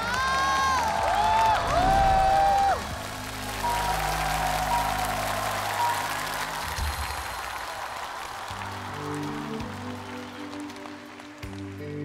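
Studio audience applauding under a short musical sting with sliding tones. The applause fades, and a slow music bed of sustained low notes begins about eight and a half seconds in.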